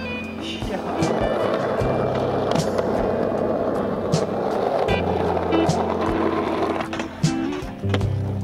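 Skateboard wheels rolling over rough asphalt, with a few sharp clacks of the board and the loudest one near the end, mixed over background music with a steady bass line.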